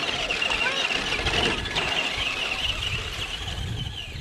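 Two Traxxas RC cars, a Slash and a Rustler, racing off the start line: the steady, wavering high whine of their electric motors and gearing, with a low rumble underneath from about a second in.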